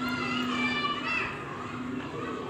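Children's voices calling and shouting as they play in the street, with a steady low hum underneath.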